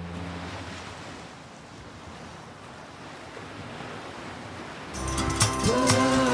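Steady rushing sea noise like surf, dipping slightly in the middle. About five seconds in, music with a beat and held notes comes in over it.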